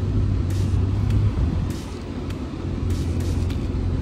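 Car engine and road noise heard from inside the cabin while driving: a steady low rumble that eases slightly about halfway through.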